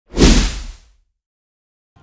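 Logo sting: a single whoosh sound effect with a deep low boom underneath. It swells in quickly and fades out within about a second.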